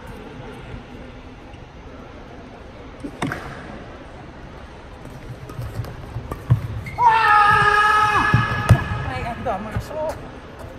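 Badminton rally on an indoor court: a sharp racket strike on the shuttlecock about three seconds in, then scattered hits and footfalls. Near the end a loud, held high tone with overtones lasts about two and a half seconds and is the loudest sound.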